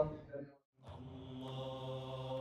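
A man's speech trails off, the sound cuts to dead silence for a moment, then a faint, steady, chant-like held note fades in and slowly swells.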